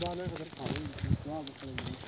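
Faint voices of people talking in the background, recorded through a mobile phone's microphone.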